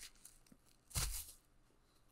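Bubble wrap crinkling as it is pulled off a stack of plastic graded-card slabs: one short rustle about a second in.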